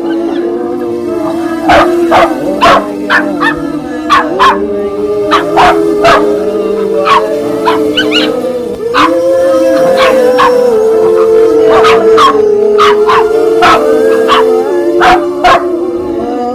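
Dogs barking and yipping in rough play, short sharp barks coming in irregular runs, over background music with long held notes.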